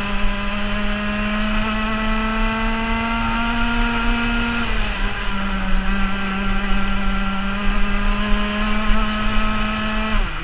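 Rotax FR 125 Max kart engine, a single-cylinder two-stroke, at high revs with a steady, rising pitch as it accelerates. About halfway through the revs drop sharply as the driver lifts off for a corner, then climb again and hold high as the kart powers out.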